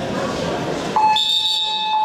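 A wrestling time-clock buzzer sounds once: a steady, loud electronic tone that starts about a second in and lasts about a second, marking the end of a period of the bout. Crowd chatter from the hall comes before it.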